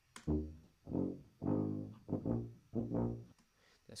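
B-flat bass (brass band tuba) track played back on its own: a short phrase of about six separate low notes, the dry recording before any EQ is added.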